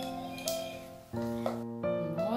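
Background piano music: slow, soft chords, with new notes struck every half second or so.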